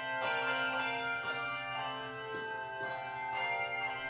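Handbell choir playing: bells struck several at a time, a new stroke every half second or so, each chord ringing on over the last.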